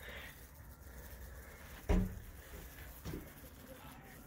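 A dog barking once, short and sudden, about halfway through, with a weaker second sound about a second later, over a low steady background.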